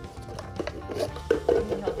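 Plastic party cups being handled and set down on concrete during a speed-stacking race, with a few light clacks, over background music.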